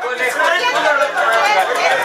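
Several people talking at once around a table: overlapping conversation.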